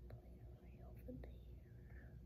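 Faint whispering voice over a low, steady hum.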